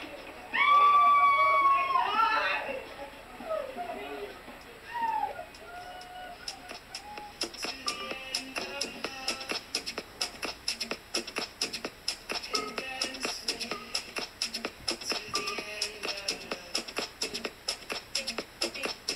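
A person screaming loudly in one long high-pitched cry just after release, followed by shorter, fainter gliding cries; from about six seconds in, background music with a fast, steady beat takes over.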